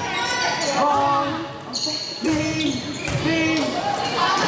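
Volleyball being struck and played during a rally in a gymnasium hall, with a few sharp ball contacts over the continuous voices of players and spectators.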